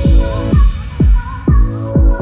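Background electronic dance music: a steady kick drum beat about twice a second under held synth chords, with the high percussion dropped out.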